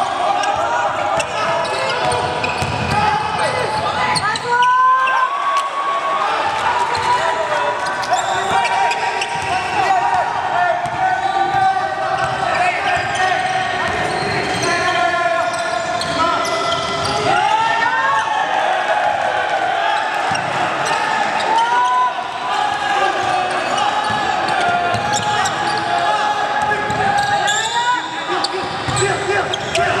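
Basketball dribbled on a hardwood gym floor, with players and onlookers calling out throughout, echoing in a large hall.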